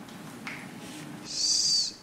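A short, high-pitched squeak about half a second long, starting just past the middle; the rest is quiet room tone.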